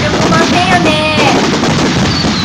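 Fireworks crackling in a dense, rapid run of pops, with a voice heard over them in the first second or so.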